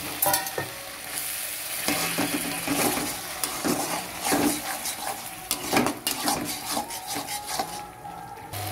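Masala paste sizzling as it fries in a metal kadai, with a steel spatula stirring and scraping it against the pan in repeated short strokes.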